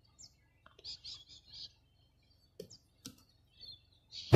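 Faint chirping of a small bird: a single note near the start, a quick run of four or five high notes about a second in, and one more near the end, with a couple of soft clicks in between.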